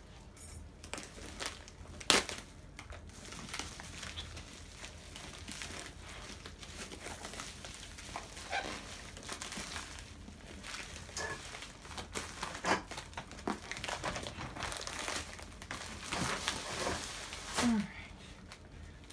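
Plastic shipping mailer crinkling and rustling as it is cut open and a cardboard box is worked out of it, with a sharp snap about two seconds in.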